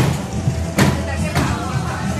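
Thumps on a stage floor as a person drops to sit and is tugged by a handbag strap: a sharp one at the start, another just under a second in and a third about a second and a half in, over a steady low hum.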